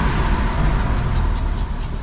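Intro sound effect: a loud, rushing whoosh like a fireball, over a deep low rumble, with faint crackling ticks.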